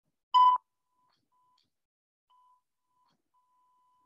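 A short, loud electronic beep about a third of a second in. It is followed by a faint Morse code tone at the same pitch, keyed in short and long pulses: dot, dash, dash, dot, then a longer dash near the end.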